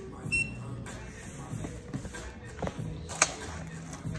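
Cardboard boxes being handled and set down on a stone shop counter, with a sharp knock about three seconds in; a short electronic beep sounds near the start. Quiet music plays underneath.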